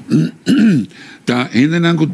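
A man's voice in three short bursts of speech or vocal sounds, the recogniser catching no words.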